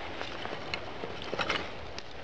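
Dry wooden sticks clicking lightly against each other as they are handled and lifted, a few separate clicks over a steady outdoor background hiss.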